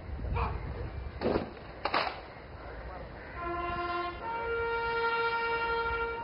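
Bugle call: a short lower note, then a higher note held for about two seconds near the end. Two sharp knocks come earlier, about one and two seconds in.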